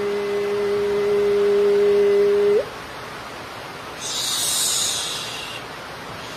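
A man's chanted call, 'Hi!', held on one steady pitch for about two and a half seconds and ending with a quick upward flick. About four seconds in, a brief high hiss follows.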